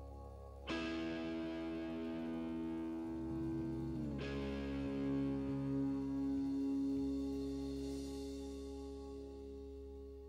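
Live band music: slow sustained chords with the organ holding them. A new chord rings out about a second in, the harmony shifts to another chord around four seconds, and it is left to fade slowly as the piece closes.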